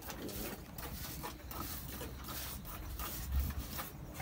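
Hand milking a cow: quick, uneven squirts of milk into a pail, with faint voices in the background.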